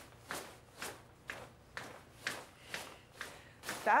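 Nylon snow pants swishing as the legs rub together, about two swishes a second, eight in all.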